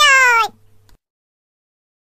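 A cartoon dog character's short, high-pitched yelp, falling in pitch, right at the start, then silence.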